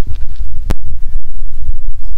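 Wind buffeting the microphone: a loud, uneven low rumble, with one sharp click under a second in.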